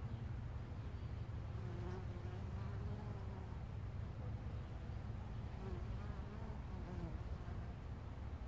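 Carniolan honey bees buzzing at a hive entrance, individual bees flying past with a buzz that rises and falls in pitch, over a steady low hum.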